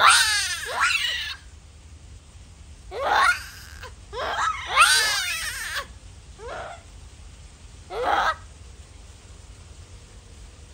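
Japanese macaque screaming: a series of about six loud, wavering calls in irregular bursts, the loudest at the very start and about five seconds in.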